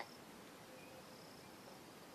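Near silence: room tone with faint, high-pitched insect chirping, like crickets, coming and going.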